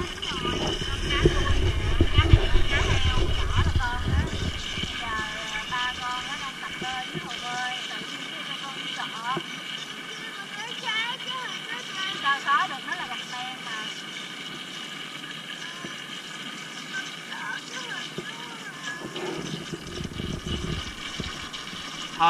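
Faint voices at a poolside, with a low rumble for the first four seconds or so and a steady high hum throughout.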